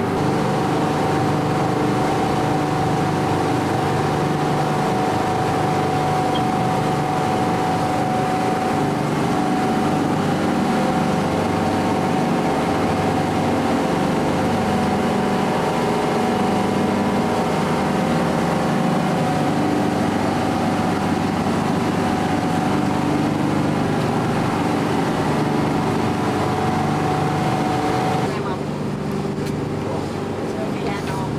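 Motor boat under way at a steady cruising speed: engine drone holding several steady tones over a constant rush of water and wind. A little before the end the sound drops and changes.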